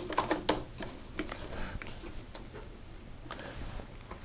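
Light clicks and knocks of a featherboard and workpiece being handled and set in place on a tablesaw's cast-iron table, several in quick succession at first and then a few scattered ones; the saw is not running.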